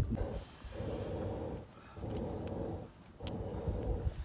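Curd being churned with a wooden churning stick in a tall pot: rhythmic sloshing swishes of the frothy liquid, about four strokes, each under a second with short pauses between. This is the churning stage of separating butter from curd for ghee.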